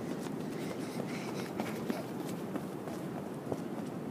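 Footsteps on firm beach sand as someone runs, soft irregular steps over a steady background rush.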